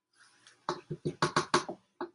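Plastic mix-and-chop utensil knocking against a soup pot as it stirs, a quick run of about eight knocks starting a little under a second in.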